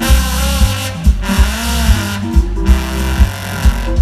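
New Orleans jazz band playing live through a stage PA: trombone carrying the melody over keyboard, electric bass and drums, with a steady beat.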